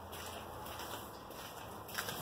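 Faint steady room noise with no distinct sound in it, and one light click at the very end.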